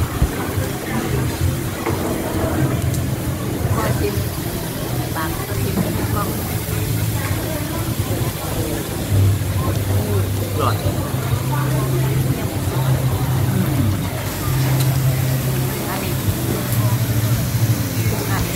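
Indistinct chatter of nearby diners, with a low hum that comes and goes and is strongest in the second half.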